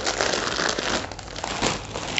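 Clear plastic saree packaging crinkling as the wrapped saree is handled and set down, an irregular run of crackles.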